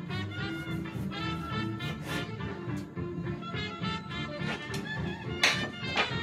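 Background swing-style music with brass instruments, and a single sharp knock about five and a half seconds in.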